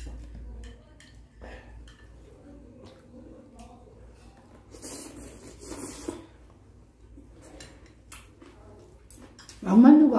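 Light clicks of metal chopsticks against small bowls while eating, with a slurp of about a second and a half, about five seconds in, as food is sucked from a bowl held to the mouth. A voice breaks in loudly near the end.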